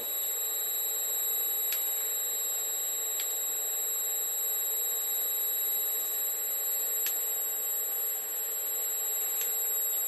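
FANUC industrial robot arm's servo motors running as it is jogged slowly down, giving a steady high-pitched electrical whine over a lower hum. A few faint clicks sound through it, spaced a second or more apart.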